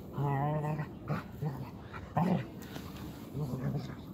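Dogs play-fighting, a husky puppy wrestling under a larger white dog, with growling whines: a wavering whine-growl for about half a second near the start, then several short growls, the loudest a little after two seconds.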